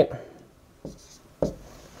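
Dry-erase marker writing on a whiteboard: a few short, faint strokes.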